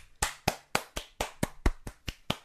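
A quick run of hand slaps, high fives close to the microphone, about four a second.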